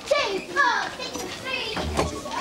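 Young voices shouting and calling out. The pitch slides down in a cry about half a second in.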